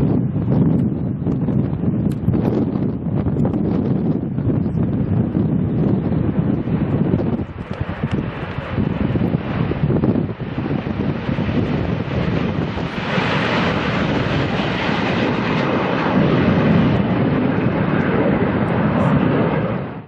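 Me 262 replica's jet engines running on the runway, buried under heavy wind buffeting on the microphone. About thirteen seconds in the jet noise turns louder and higher-pitched, and it holds there until the end.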